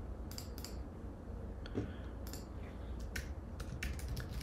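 Computer keyboard keystrokes, a handful of faint, irregular clicks, over a low steady hum.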